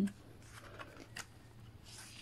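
Faint rustling and a couple of light ticks of a glossy album photobook page being handled and turned by hand.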